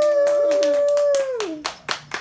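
Hands clapping to celebrate, under a long, loud, high held call that keeps one pitch and stops about one and a half seconds in; a few louder, separate claps follow.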